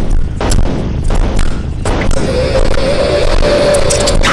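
Cartoon monster sound effects: a run of heavy booms over a deep rumble, then a long held screeching tone starting about halfway in.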